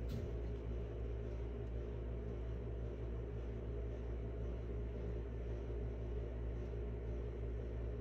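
A steady low hum, like a machine running in the room, holding the same level throughout with nothing else happening.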